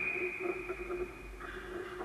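Referee's whistle in one long steady blast stopping play at a goalmouth scramble in ice hockey, cutting off about a second and a half in. Skates scrape on the ice after it.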